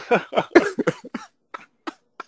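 A man laughing in a quick run of short bursts that dies away about a second in, followed by a couple of faint breathy blips.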